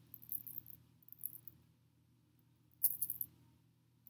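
Faint metallic clinks and clicks from a chunky gold-tone chain bracelet as it is handled and its large clasp is worked open, a few light clicks with the clearest cluster near the end.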